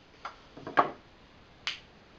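A few short, sharp clicks and taps from cut halves of an aluminum soda can being handled and set against a wooden tabletop: a faint one, then two close together, then a crisp one near the end.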